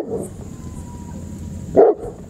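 Rottweiler giving two short barks, one at the very start and one near the end.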